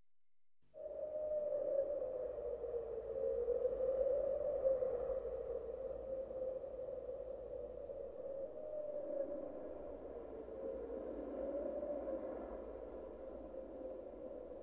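Electronic music intro: one sustained synthesizer tone that wavers gently in pitch, starting about a second in over a faint low hum.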